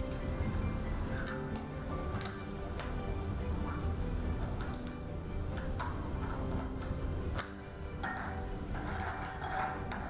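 Background music with scattered clicks and clinks of plastic draw capsules being handled and opened, and a brief clatter near the end as a capsule is taken from a glass draw bowl.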